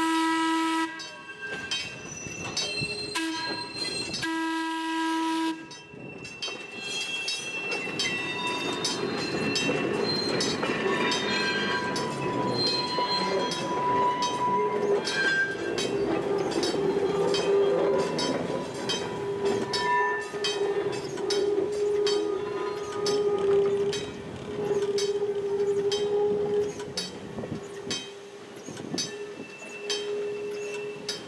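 Vintage electric box motor sounding its horn, one blast ending about a second in and another a few seconds later. It then rolls past with a steady rumble, its wheels squealing on the curve and rail joints clicking under the wheels of it and its trailing boxcar.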